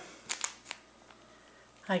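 A few short handling clicks about half a second in, then faint room tone. A woman's voice starts right at the end.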